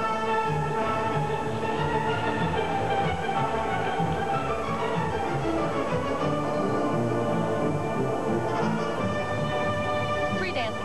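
Orchestral music with strings: the ice dance couple's free-dance music, playing steadily.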